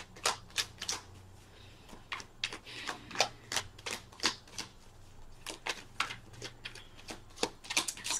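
A tarot deck shuffled by hand: a run of irregular sharp clicks and slaps of cards, several a second, with short pauses.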